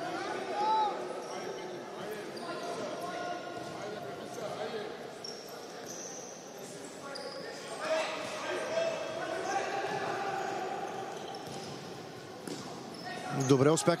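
Indoor futsal game heard from the court side: players' and spectators' voices and shouts echoing around the sports hall, with the ball being kicked and bouncing on the court. The sound swells briefly about a second in and again about eight seconds in.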